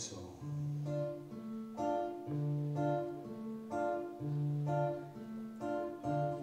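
Acoustic guitar and accordion playing a slow instrumental phrase, held chords changing about once a second.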